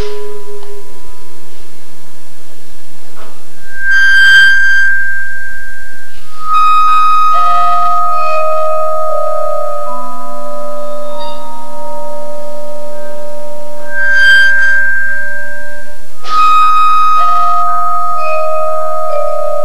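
Vibraphone played slowly with mallets: single notes and small chords struck every few seconds, each left ringing for several seconds so that the tones overlap.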